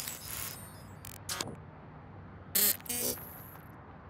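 Digital glitch and static sound effects: several short electronic crackling bursts, the loudest about two and a half to three seconds in. A thin high whine trails the last burst, then only faint background hiss remains.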